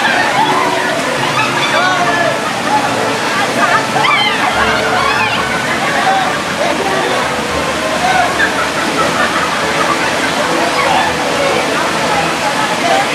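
River water running steadily over rocks, with sloshing as a group of women wade waist-deep, under a crowd of overlapping women's voices chattering and calling out, with high cries about four seconds in.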